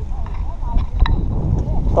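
Mountain-bike tyres rolling over a wet, muddy dirt road with wind buffeting the action-camera microphone: a steady low rumble, with a sharp click about a second in.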